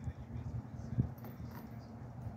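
A wheel bearing being handled against a steel wheel hub: a low handling rumble with two light knocks, the sharper one about a second in.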